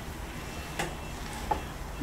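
A serving spoon knocking lightly twice against a stainless-steel pan, the knocks well under a second apart, as cooked freekeh stuffing is stirred and scooped, over a low steady hum.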